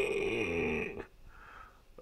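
A person making a rough, drawn-out vocal sound, like a snore or grunt, falling in pitch and lasting about a second.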